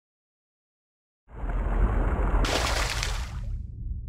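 Silence, then about a second in a logo-sting sound effect starts suddenly: a deep rumbling impact with a splash-like crash, a brighter burst layered on top in the middle, fading into a low rumble.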